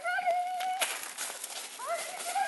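A high-pitched, drawn-out vocal call that rises and then holds one steady pitch for about a second, with a second rising call starting near the end.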